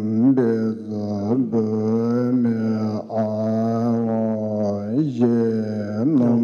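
A deep male voice chanting a Tibetan Buddhist liturgy, holding long low notes with brief upward swoops between phrases.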